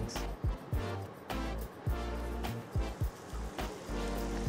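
Background music with a bass beat.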